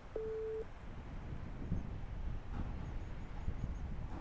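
A single short electronic beep: one steady mid-pitched tone of about half a second, right at the start. After it comes a low, even rumble of wind on the microphone.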